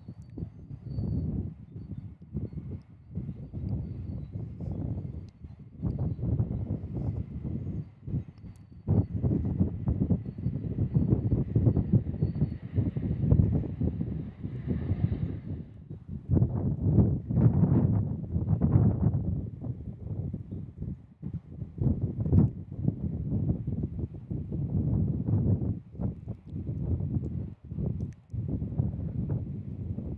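Gusty wind buffeting the microphone: a low, uneven rumble that swells and drops with each gust. A faint steady high whine runs under it for the first half and then fades.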